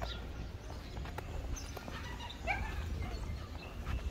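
A dog barks once, a short call about halfway through, over a steady low rumble and a few scattered clicks.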